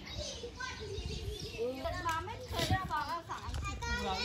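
Children's voices talking and calling out, high-pitched and getting busier about halfway through, over a low rumble.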